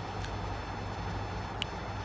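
A pause between words: a steady low background hum, with two faint short ticks near the end.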